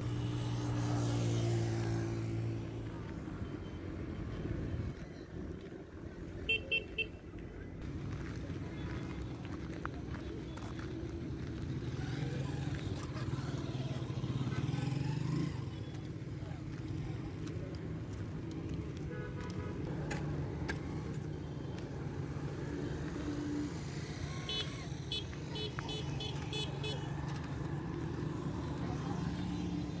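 Road traffic going by: the steady drone of vehicle engines, loudest at the start, with two short runs of quick, repeated high beeps, one early and a longer one near the end.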